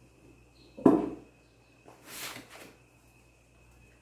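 A single sharp knock about a second in, as a plastic cake turntable is set down on the worktop. A softer scrape follows as the aluminium cake pan is set onto it.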